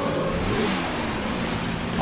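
Cartoon sound effect of a car engine revving as the car speeds off, over a steady rushing noise.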